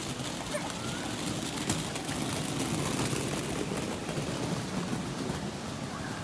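Steady outdoor background noise, an even hiss-like haze with no distinct event.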